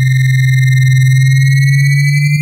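Oscilloscope music: a synthesized stereo signal whose left and right channels draw a many-petalled flower figure on an oscilloscope. It is heard as a loud, steady low tone with a fast flutter and a close pair of high whistling tones above it, all beginning to rise slightly in pitch near the end.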